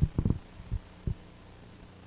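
Handling noise on a handheld microphone: several soft knocks in about the first second, then a steady low electrical hum from the sound system.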